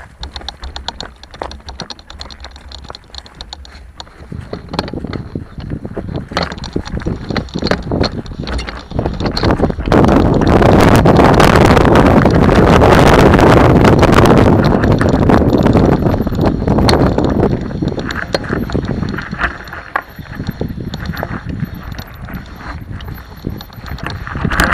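Mountain bike riding down a rough trail: the rumble and rattle of the bike over stony ground, with many sharp knocks and wind on the action-camera microphone. It starts quiet with scattered ticks, builds after about four seconds, and is loudest from about ten to sixteen seconds in before easing off.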